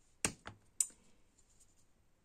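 Three quick hard clicks of small acrylic paint jars knocking together as one is picked up from the pile.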